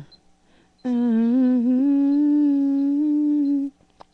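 A woman's voice holding one long, steady note for about three seconds, starting about a second in, with a small upward bend in pitch early in the note. Just before it, an earlier note drops in pitch and breaks off.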